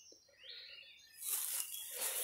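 Soft rustling of willow leaves and branches that starts about a second in, as someone moves through a dense young willow thicket.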